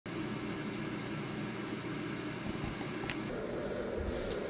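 Steady low hum of indoor room noise, like a fan or air conditioning running, with two faint ticks about three seconds in.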